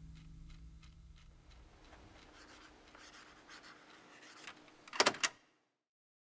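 The last chord of an acoustic guitar dying away, followed by faint rustling and small handling noises, then a quick cluster of three sharp clicks about five seconds in.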